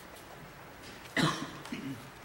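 A person coughing once, sharply, about a second in, followed by a shorter, softer throat-clearing sound, over quiet room tone in a large room.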